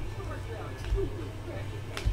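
Trading cards being flipped through by hand, with a light click about a second in and another at the end, over a steady low hum and faint background voices.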